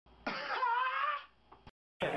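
A young man's voice making one drawn-out vocal sound of about a second, slightly wavering in pitch, followed by a faint click.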